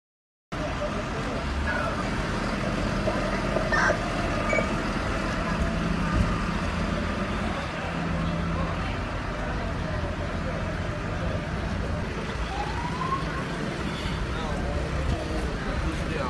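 Dead silence for about half a second, then steady outdoor street noise: vehicle engines running, with indistinct voices in the background.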